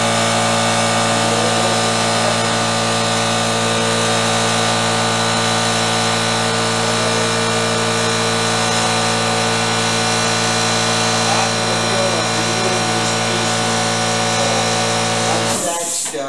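Shop air compressor running loudly and steadily, a constant motor hum with pump noise that drowns out the room. It stops abruptly near the end.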